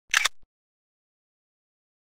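A single short, sharp sound effect with two quick peaks, lasting about a quarter of a second, right at the start.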